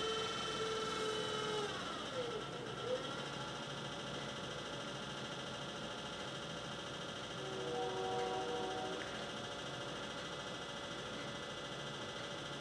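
Electric potter's wheel spinning, its motor giving a quiet steady whine of several tones, one of which dips in pitch about two seconds in and comes back up. Wet clay is being shaped by hand into a bowl on the wheel head.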